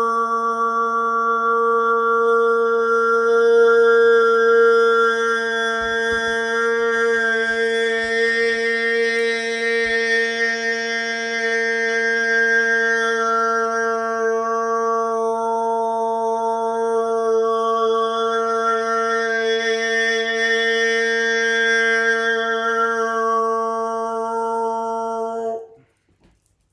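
A man's voice holding one long sung tone, toning in a sound-healing style, with the vowel shifting so the upper overtones brighten and fade. The tone cuts off suddenly just before the end.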